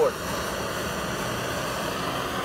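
Handheld blowtorch burning with a steady, even hiss.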